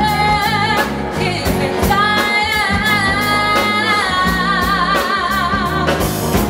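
Live soul/R&B band playing, with a woman singing long held notes with vibrato over drums and bass. Backing singers join in.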